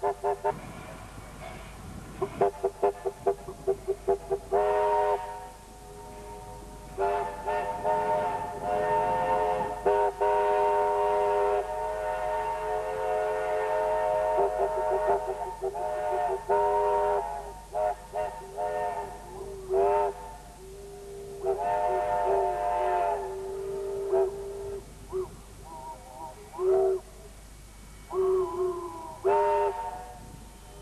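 Steam locomotive whistle: a quick run of short toots in the first few seconds, then a series of long blasts, the last few bending in pitch.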